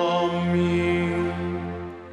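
Sung liturgical chant holding one long steady note, fading out near the end.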